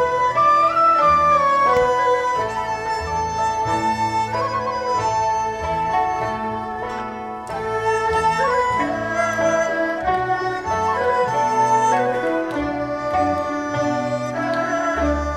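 Chinese traditional orchestra playing a melodic piece: a dizi flute and erhu-type bowed strings carry a sustained melody over a bass line.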